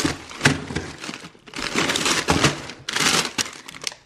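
Plastic bags of frozen food crinkling and rustling as they are shifted and picked up by hand in a chest freezer, in several irregular bursts.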